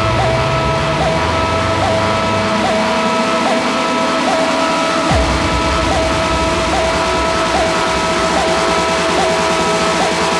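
Electronic dance music played in a live DJ set: a held high synth tone over a slowly rising sweep, with the deep bass and kick dropping back in about five seconds in.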